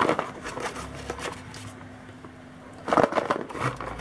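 Handling noise as a stainless steel aquarium heater and its cord are pulled out of a cardboard box: irregular rustling, scraping and small clicks, louder for a moment about three seconds in.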